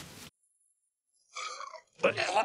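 A person retching once, a short gag lasting about half a second, after a second of dead silence that cuts in suddenly on a faint hiss.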